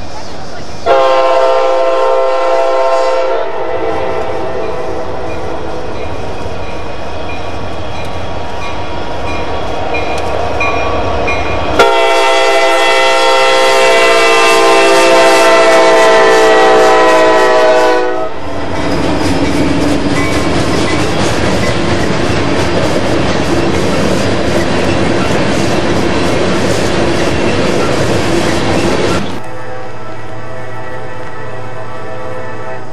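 Norfolk Southern diesel freight locomotive's multi-chime air horn. A long blast starts about a second in and fades away, and a second loud blast runs from about 12 to 18 seconds. The locomotive and train then pass close by with heavy rumble and wheel clatter, which cuts off abruptly near the end.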